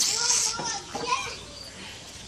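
A person's high-pitched voice in about the first second, then only quiet background.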